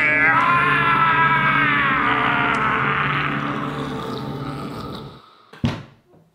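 A man's long, drawn-out roar of frustration that slowly fades away over about five seconds, followed by a single sharp thump near the end.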